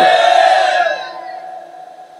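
A man's drawn-out, chant-like phrase, amplified through a public-address system, ends at the very start. A broad swell of crowd-like voices follows and fades away over about a second and a half.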